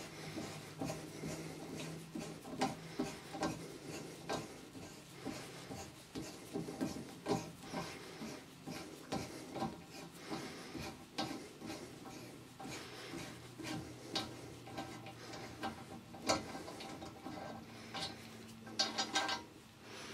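Steel hand tap being unscrewed from a freshly cut thread in steel with a sliding T-bar tap wrench: faint, irregular metal-on-metal scraping and light clicks as the wrench is turned stroke by stroke, with a quicker run of clicks near the end as the tap comes free.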